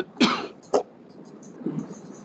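A person coughing twice within the first second, two short coughs heard over an online video call.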